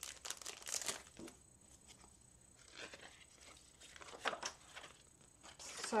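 Plastic packaging crinkling as a Stampin' Up embossing folder is unwrapped and slid out of its sleeve by hand, loudest in the first second, then in a few short, quieter spells of handling.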